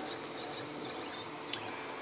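Stepper motors of a Mendel Max 2.0 3D printer running as it prints, giving faint high tones that shift in pitch as the print head moves, with a single click about one and a half seconds in.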